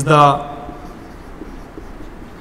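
A man's voice says a short phrase, then a whiteboard marker writes faintly on the board.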